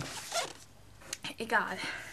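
A quick rustling swish as a paperback book is handled and picked up, then a few soft clicks and a short murmured voice.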